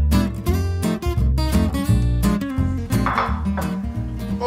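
Background music: acoustic guitar strumming with a steady rhythm.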